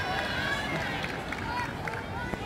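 Children's high-pitched voices calling and shouting across an outdoor playing field, with a few short knocks about halfway through.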